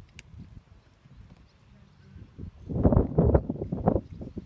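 Hoofbeats of a horse cantering on a sand arena: faint at first, then a loud run of quick, irregular thuds in the last second and a half.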